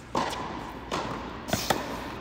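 Tennis ball hit back and forth in an indoor rally: about four sharp knocks of racket strikes and ball bounces on the hard court, echoing in a large hall. The loudest come just after the start and a second and a half in.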